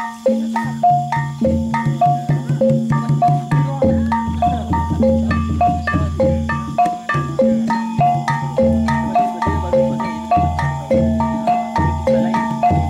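Live kuda kepang ensemble music: metallophones struck in a steady, repeating melodic pattern of about four notes a second, over low ringing gong tones.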